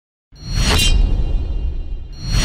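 Logo-intro whoosh sound effect: silence, then about a third of a second in a swish swells up and fades, over a low rumbling bass that carries on.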